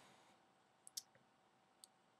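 Near silence with a few faint, short clicks, the clearest about a second in and another near the end.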